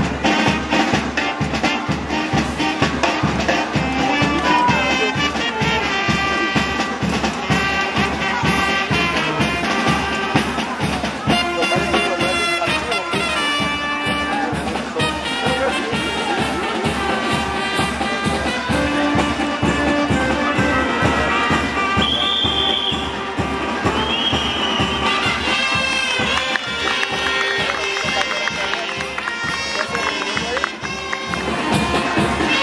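Brass-band music with a steady beat.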